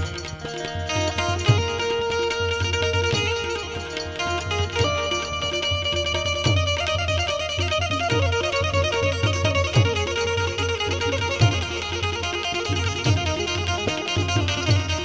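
Instrumental interlude of Indian folk music: tabla drumming, with bass-drum strokes that glide down in pitch, under a plucked-string melody.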